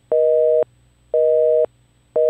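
Telephone busy signal: a two-tone beep sounding twice, half a second on and half a second off.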